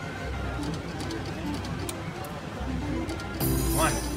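Slot machine spinning its reels, with a scatter of light clicks and electronic machine tones, over the busy background noise and chatter of a casino floor. A rising electronic tone sounds near the end as the reels come to a stop.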